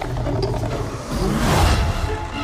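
Film sound effects of a monster attack: low rumbling with a creature's roar that swells about one and a half seconds in, under dramatic score.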